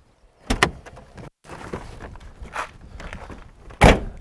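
A car door, on a Volkswagen Beetle, being worked. There is a sharp double click about half a second in, then a heavy thud of the door shutting just before the end, the loudest sound.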